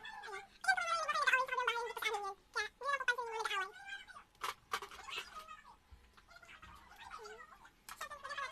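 High-pitched laughing and squealing from young women, loudest in the first four seconds. Two sharp clicks come about four and a half seconds in.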